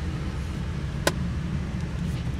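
Steady low hum of a 2015 Volkswagen CC's 2.0-litre turbocharged four-cylinder idling, heard from the back seat of the cabin, with a single sharp click about halfway through.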